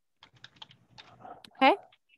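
A run of quick light clicks from a computer keyboard, about ten over a second and a half, then a brief voiced sound from a woman near the end.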